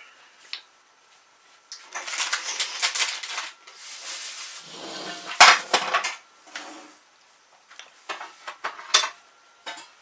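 Kitchen dishes and cutlery clattering: a metal fork on a plate and crockery being handled, in scattered bursts of clinks. The sharpest clink comes about five and a half seconds in.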